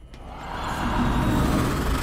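Horror-trailer sound design: a deep rumble with a hissing wash over it, swelling up from quiet over about a second and then holding loud and steady.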